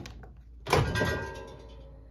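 Hamilton Beach microwave door unlatched and pulled open: one sharp clack a little under a second in, followed by a brief metallic ring that dies away over about a second.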